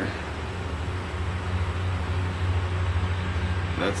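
A steady low mechanical hum with a faint hiss over it.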